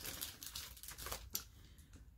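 Faint rustling and crinkling of a paper sewing pattern envelope and its instruction sheet being handled, with a few soft crackles.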